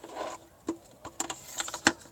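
Hard plastic window-cleaning gear clicking and tapping as it is handled: a squeegee channel and a plastic bucket-on-a-belt insert knocking together, a handful of small irregular clicks with a louder tap near the end.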